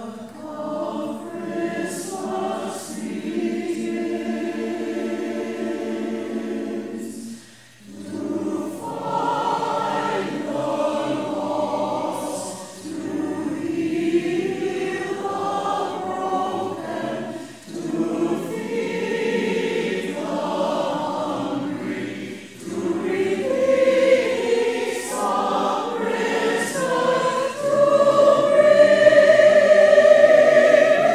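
A church choir singing in long held phrases with short breaks between them, swelling louder near the end.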